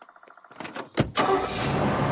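A segment-transition sound effect: fast, faint ticking, then about a second in a sudden loud, sustained rumble with a steady low engine-like hum.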